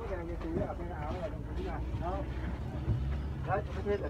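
Steady low rumble of a bus engine and road noise heard inside the passenger cabin, with passengers' voices talking quietly over it.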